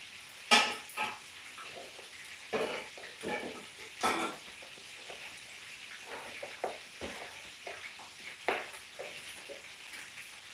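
Kitchen knife slicing carrot on a plastic chopping board: irregular taps and clicks of the blade striking the board, with louder knocks about half a second in and about four seconds in.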